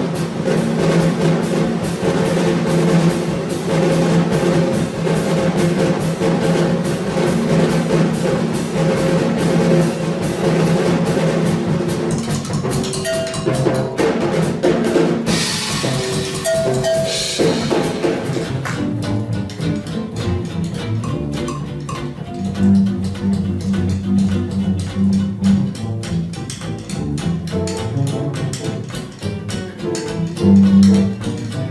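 Jazz drum kit solo: rapid strokes on snare and bass drum, with a loud wash of cymbals about halfway through.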